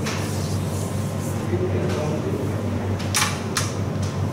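Steady low hum of the hall's fan or air conditioning, with two short swishes about three seconds in.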